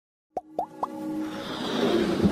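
Logo intro sting: three quick plops, each rising in pitch, about a quarter second apart, then a swelling whoosh that builds in loudness.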